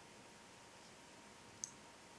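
Near silence, broken by a single sharp click of the two knitting needles touching about one and a half seconds in, while stitches are being bound off.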